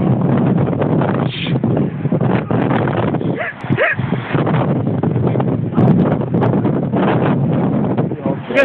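Loud, steady rumble of wind and handling noise on a phone microphone, with two short whining calls gliding up and down in pitch about three and a half seconds in.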